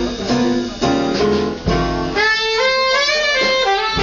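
Live big band playing a slow jazz-blues number with piano, bass and drums. About halfway through the band drops out and a lone alto saxophone plays a short unaccompanied phrase, with the band coming back in at the end.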